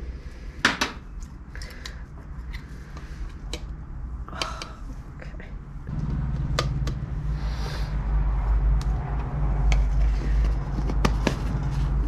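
Light clicks and taps of plastic cups, a plastic spoon and jar lids being handled while dye powder is weighed out on a small digital scale. About halfway through, a steady low rumble sets in underneath and continues.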